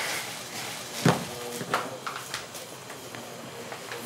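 Quiet room noise with one sharp knock about a second in and a brief murmured voice just after it.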